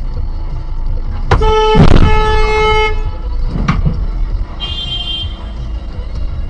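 Car horn blaring for about a second and a half over low street-traffic rumble, with a loud rush of noise under it at its loudest; a fainter, higher horn toot follows a few seconds later.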